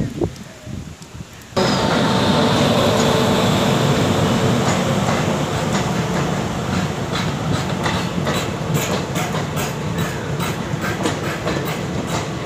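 Indian Railways passenger train passing close by: a loud steady rumble of wheels on rail with rhythmic clickety-clack from the rail joints, a few clicks a second, strongest in the second half. It comes in suddenly about a second and a half in.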